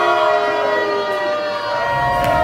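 Siren-like wail of several long held tones that slide slowly downward in pitch, opening a wrestler's entrance music played over the arena speakers.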